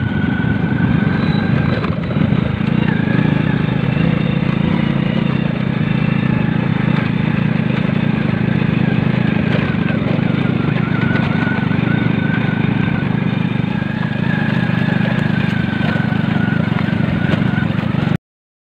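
Small motorcycle engine running steadily while being ridden along a rough dirt trail, heard from the bike itself, with a faint held whine above the engine note.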